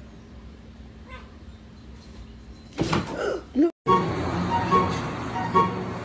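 A domestic cat lets out one loud meow about three seconds in, its pitch sweeping up and down, after a quiet stretch. A moment later the sound cuts out, and music with a regular beat starts.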